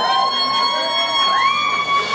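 Dub-style electronic siren effect: a synthesized tone glides up and holds, and a second, higher tone sweeps up about one and a half seconds in, like a siren at the opening of a reggae song.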